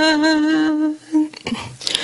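A woman's voice chanting Quranic recitation, holding one long, drawn-out note that ends about a second in, followed by a few short broken sounds.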